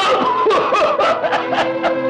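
A man laughing in a quick series of short bursts. Held background-music notes come in about a second and a half in.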